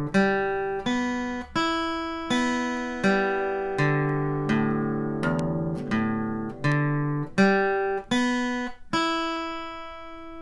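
Steel-string acoustic guitar picked slowly with a flat pick, one downstroke on each string in turn, stepping across the strings and back. About one note every three-quarters of a second, each ringing into the next. The last note rings out near the end.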